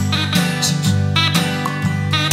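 Acoustic guitar strumming a steady accompaniment in an instrumental passage of a Latin American folk song, with no singing.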